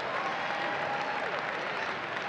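Church congregation applauding, a steady even clapping.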